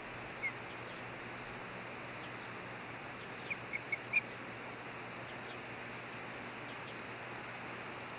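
Osprey giving short whistled chirps: one about half a second in, then a quick run of four a few seconds later, the last the loudest. A steady hiss runs underneath.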